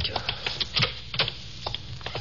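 Radio-drama sound effects: a string of sharp, irregularly spaced clicks and knocks.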